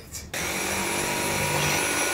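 Cordless stick vacuum switching on about a third of a second in and running steadily, picking up sanding dust from a worktable.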